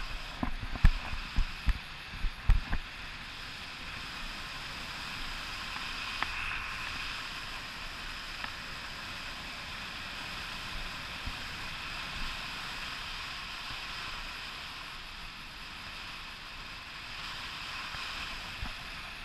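Wind from a paraglider's airflow rushing steadily over a selfie-stick camera's microphone during flight, with a few low buffeting thumps in the first three seconds.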